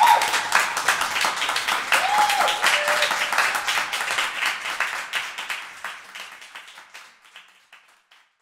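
Audience applauding, the clapping dense at first and then fading out over the last couple of seconds. A brief voice calls out about two seconds in.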